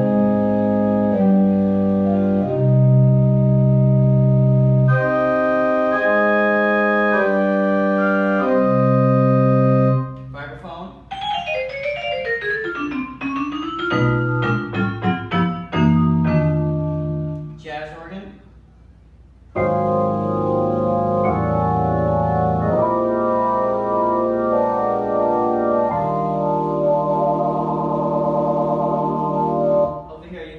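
Viscount Concerto 5000 digital grand piano played on its pipe organ voice: held organ chords, a stretch of quick runs up and down the keyboard in the middle, then held chords again that waver near the end.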